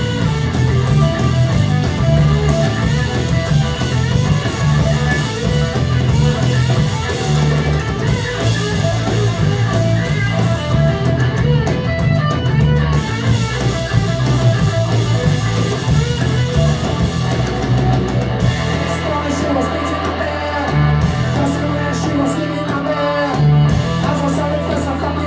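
Punk band playing live on electric guitars, bass and drums, a loud, dense instrumental stretch with no singing. The bass pattern changes about three-quarters of the way through.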